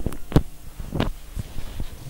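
A handful of dull thumps and knocks, about five across two seconds, as the lectern microphone is handled, over a faint steady hum.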